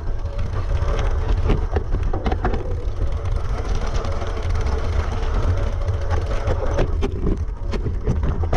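Mountain bike riding down a rocky, loose trail from an on-bike camera: frequent rattles and knocks from the bike as the tyres go over stones, over a steady low rumble from wind and vibration on the microphone.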